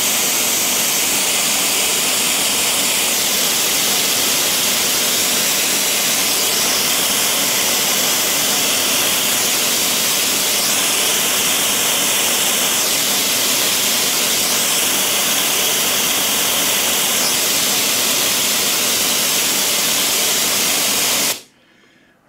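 White noise played through an Edifier D12 Bluetooth speaker: a loud, steady hiss. Its tone shifts several times as the front grille is held in front of the drivers and taken away again, showing how the grille colours the speaker's sound. It cuts off suddenly near the end.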